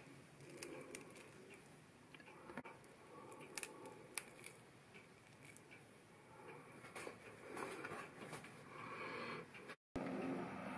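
Very quiet handling sounds of a finger lime being squeezed by hand over a plate: a few faint soft clicks and squishes. The sound drops out for a moment just before the end.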